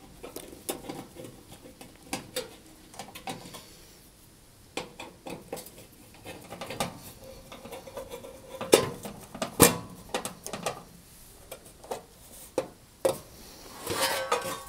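A screwdriver working screws out of a cooker's sheet-metal access panel, with irregular metallic clicks, scrapes and small knocks; the sharpest clinks come a little past the middle.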